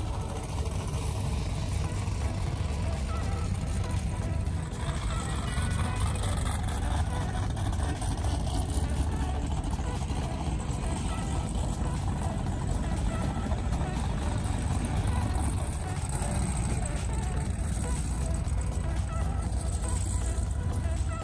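Steady low rumble of powerboat engines idling at a dock, with voices in the background.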